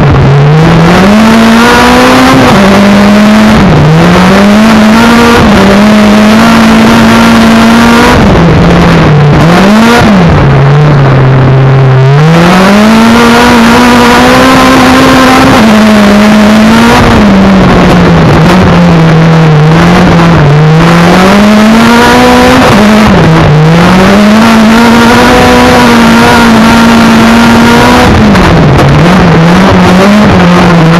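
Autocross race car engine heard from inside its cockpit, very loud, revving up over and over and dropping back sharply at each gear change or lift for a corner.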